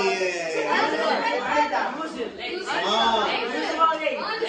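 Chatter of many boys' voices talking over one another in a classroom.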